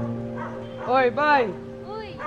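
A dog giving two quick yelps, rising and falling in pitch, about a second in, over sustained background music.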